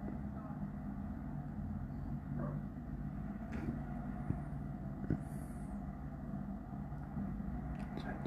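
Recovery truck's engine running at idle, a steady low hum, with two short sharp knocks a little past the middle.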